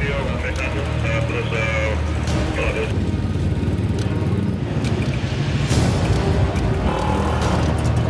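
Motorcycle and car engines idling in a steady low hum, with indistinct crowd chatter and background music over it.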